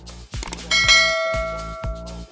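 Notification-bell 'ding' sound effect of a subscribe-button animation. It strikes about two-thirds of a second in and rings out, fading over about a second and a half, over electronic background music with a steady beat.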